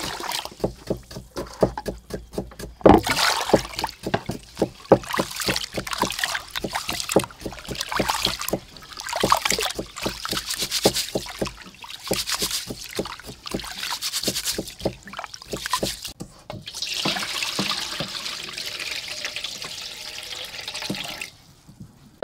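Raw rice being washed by hand in an aluminium pot: water poured in from a plastic jug, then hands swishing and squeezing the grains, giving irregular splashes and drips. For the last few seconds there is a steadier run of water, which stops suddenly near the end.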